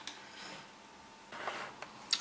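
Quiet room tone with a sharp click at the very start and two faint clicks near the end: computer mouse clicks while ejecting a drive from the Windows taskbar.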